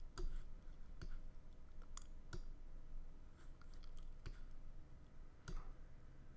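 About half a dozen sharp computer mouse clicks at irregular intervals, made while adjusting effect settings on screen, over faint room tone.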